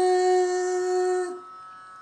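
A woman's voice holding one long, steady sung note in a Carnatic devotional song, fading out a little over a second in and leaving a quiet pause.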